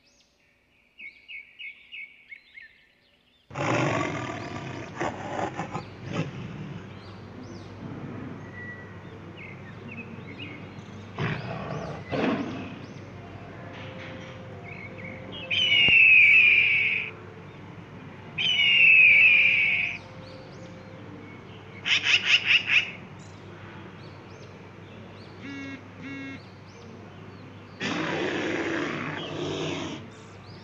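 A run of wild animal and bird calls, one after another: short bird chirps about a second in, a loud animal roar, two loud falling bird calls midway, a quick series of sharp pulses, and another roar near the end.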